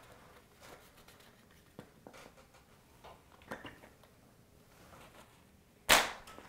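A few faint clicks and handling noises, then one sharp, loud snap near the end: a chalk line being snapped against a drywall wall to mark layout lines.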